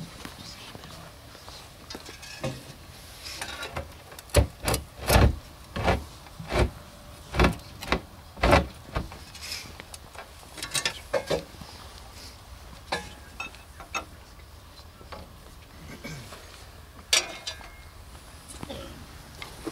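A steel pry bar knocking and scraping against a burial-vault lid as it is worked into place: about seven sharp knocks a half-second to a second apart in the middle, then a few lighter clatters and one last knock near the end.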